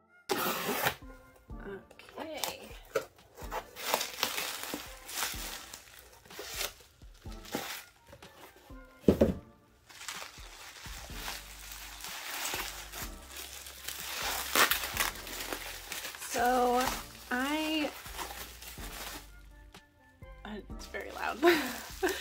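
Bubble wrap and plastic packaging crinkling and rustling as it is handled and unwrapped by hand, with a louder thump about nine seconds in. A short wordless vocal sound comes twice, at about sixteen and seventeen seconds.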